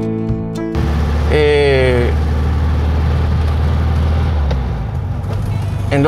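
A moment of acoustic guitar music, then the in-cabin sound of a 1980 VW Beetle 1300 driving: its air-cooled flat-four engine runs steadily with road noise, and the low engine drone drops away about four and a half seconds in. A short voice sounds briefly near the start of the driving.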